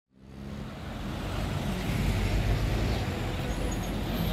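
Street traffic with the diesel engines of minibuses and a bus running close by: a steady low rumble that fades in at the start and swells in the middle.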